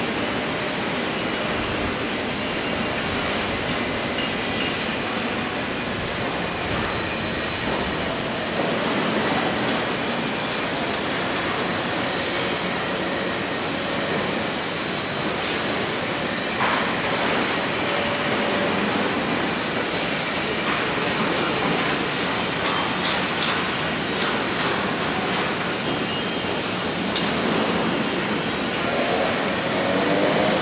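Steady construction-site din: a continuous rumble and hiss with scattered clicks and faint high metallic tones, and a rising whine from machinery near the end.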